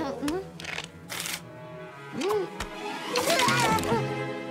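Cartoon soundtrack: background music with a character's wordless vocal sounds rising and falling in pitch, and a few short noisy swishes.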